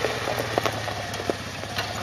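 Off-road buggy's engine running at idle, a steady low hum, with a few light clicks scattered through it.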